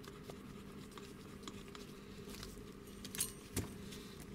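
Faint metallic clinks and clicks of a Vespa Cosa clutch basket and its plates being handled and fitted together, with a couple of sharper clicks about three seconds in, over a low steady hum.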